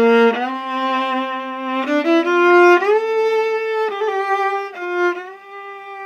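Solo viola playing a fiddle tune, long bowed notes changing pitch, with a lower note sounding under the melody as a double stop for the first half and single held notes after.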